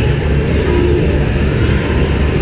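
A loud, steady low rumble of indoor rink background noise, with no distinct strikes, knocks or voices standing out.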